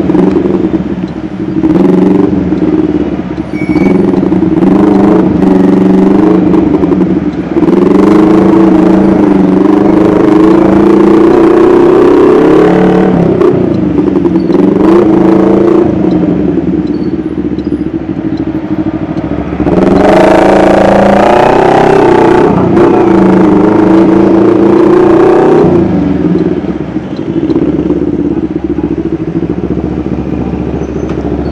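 Motorcycle engine heard from the rider's seat while riding in traffic, its note rising and falling with the throttle. About twenty seconds in it pulls harder and louder, then eases off near the end.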